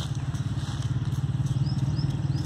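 An engine running steadily with a fast, even low pulse, like a motorcycle idling. Faint short high chirps come in near the end.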